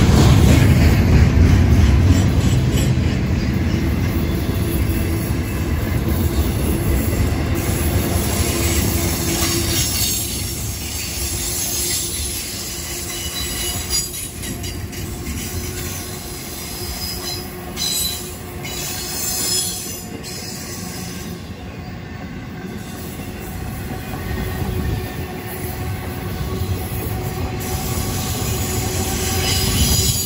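Double-stack container freight cars rolling past on the track: steady wheel-and-rail noise with clattering over the rail joints and some wheel squeal. It is loudest at first, eases off in the middle as a run of empty well cars passes, and builds again near the end as loaded cars come by.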